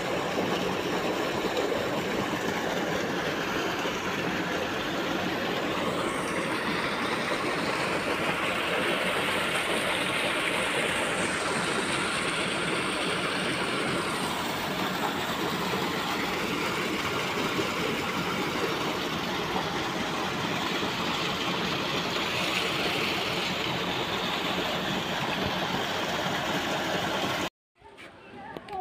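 Water gushing from a pipe spout and splashing into a pool, a steady rushing noise that cuts off suddenly near the end.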